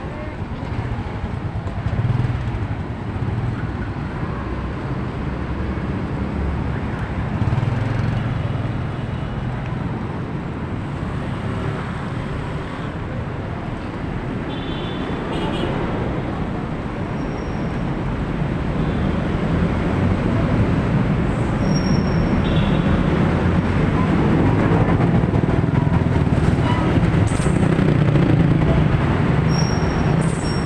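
Street traffic: cars, vans and motorcycles passing close by on a wet road, a steady engine and tyre rumble that grows louder in the last third.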